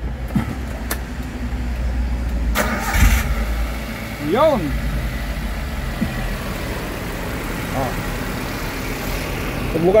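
Suzuki four-cylinder petrol engine being cranked and started, then running at idle, just after a replacement ignition coil has been fitted to cure a misfire.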